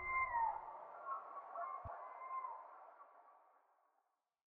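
A few soft electronic tones, some sliding downward in pitch, over a faint hiss, fading out to silence near the end.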